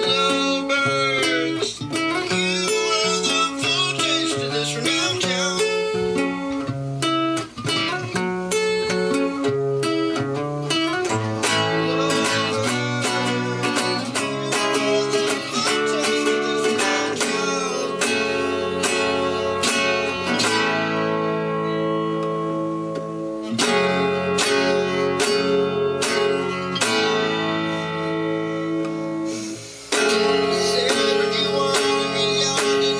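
Classical guitar played solo: picked chords and single notes at first, then from about eleven seconds in a steady run of strummed chords, several strokes a second.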